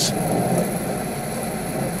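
A steady low mechanical rumble, like an engine running, with no other event standing out.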